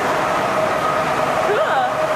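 A steady machinery drone with a constant two-note hum over even noise, from the ship's machinery or ventilation in the enclosed mooring deck. A brief voice sounds near the end.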